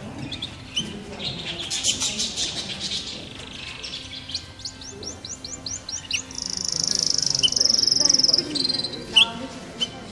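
Canaries singing in an aviary: quick high chirps and short trills, then a run of rapid rising notes about five seconds in and a long, steady rolling trill from about six to eight seconds, the loudest part.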